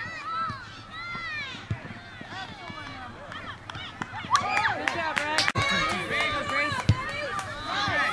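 Many voices shouting and calling over one another from the sideline and the field of a youth soccer game, getting louder about halfway through, with a few sharp knocks.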